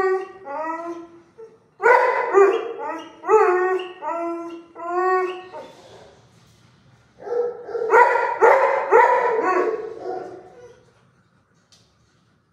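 Dog barking in quick, high-pitched runs, in three bouts, falling quiet about ten and a half seconds in.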